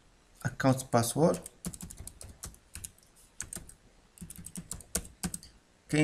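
Typing on a computer keyboard: a run of quick, irregular keystrokes lasting about four seconds, starting shortly after a brief spoken word or two.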